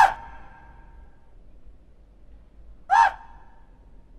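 Electronic dance music cuts off abruptly, its last synth note dying away in reverb over about a second. About three seconds in comes a single short synth blip that rises and falls in pitch.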